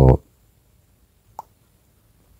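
A voice trailing off at the end of a spoken word, then quiet room tone with one faint click about one and a half seconds in.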